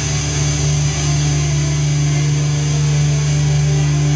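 A live band's amplified instruments holding a steady, low drone, with no new notes struck.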